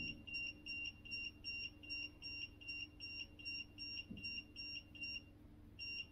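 Electronic ghost-hunting detector beeping rapidly and evenly, about four high beeps a second, pausing briefly near the end before starting again: the device has been triggered, which the investigators take as a spirit's presence.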